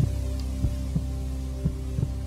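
Game-show suspense music: a steady low held chord under a paired low thump, like a heartbeat, repeating about once a second while a contestant thinks of an answer.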